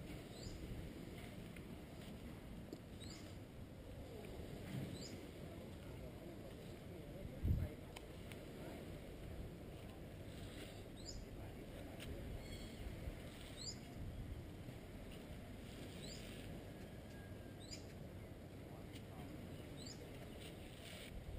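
A bird's short high call, sweeping downward in pitch, repeated every few seconds over a low steady rumble. A single dull thump about seven and a half seconds in.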